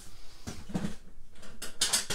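Scattered small clicks and scrapes of paper-crafting tools and cardstock being handled on a tabletop, with a brighter scrape near the end.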